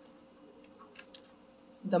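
Quiet room tone with a faint steady hum and two faint clicks about a second in; a woman's voice starts right at the end.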